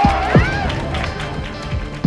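A group of people cheering in celebration over background music, the cheering brief and near the start.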